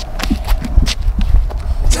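Footsteps and scuffling on pavement: several sharp taps over a steady low rumble.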